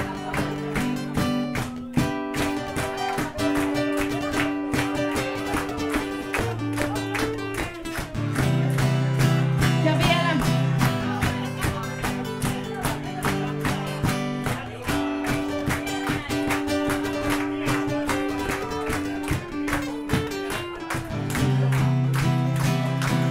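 Amplified acoustic guitar playing an instrumental solo break: fast, even strummed strokes over chords that change every few seconds, with no singing.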